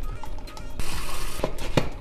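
A plastic scoop scraping through a tub of pre-workout powder, with a short rustling hiss in the middle and two sharp clicks near the end as the scoop knocks the tub. Quiet background music runs underneath.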